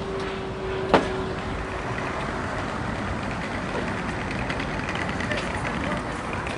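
City street traffic: a steady wash of passing and idling cars and vans, with a steady engine-like hum that fades out about two seconds in. A single sharp knock about a second in is the loudest sound.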